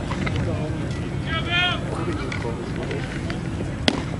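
Background spectator chatter with one voice calling out about a second and a half in, then a single sharp pop near the end, typical of a pitched baseball smacking into the catcher's mitt.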